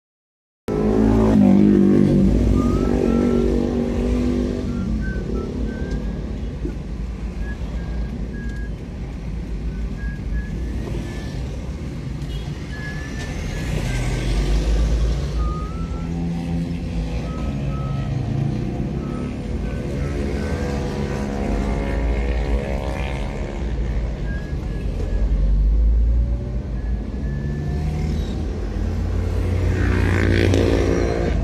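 Road traffic heard from a moving vehicle: a steady heavy rumble of engines and tyres, with engine pitch rising and falling several times as vehicles speed up and slow down.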